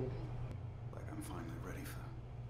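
Quiet speech: a single spoken word, then soft, half-whispered voices, over a low steady hum.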